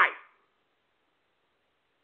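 The tail end of a man's drawn-out, rising and falling "Why?" fading out in the first moment, then near silence.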